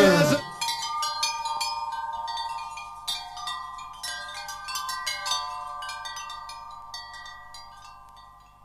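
Loud band music cuts off about half a second in, leaving wind chimes ringing: many overlapping struck metal tones that slowly fade away.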